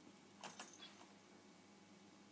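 Faint, brief metallic jingle of a dog's collar tags about half a second in, over near-silent room tone.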